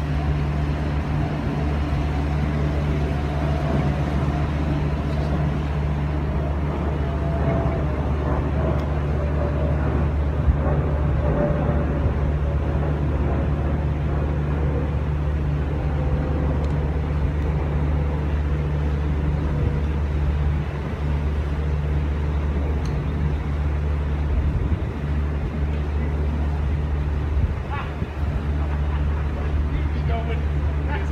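A steady, loud, low mechanical drone, with a fainter tone that slowly falls in pitch over the first half or so, and faint voices.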